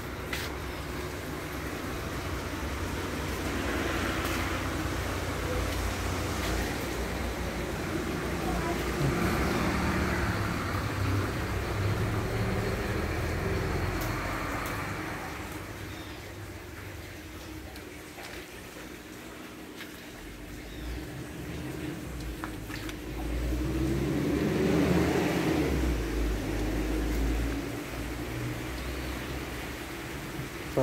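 Road traffic going by: vehicles swell up and fade away several times, the loudest pass coming in the last third, over a low rumble.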